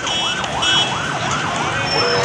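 Emergency-vehicle siren in a fast yelp, its pitch sweeping up and down about three times a second.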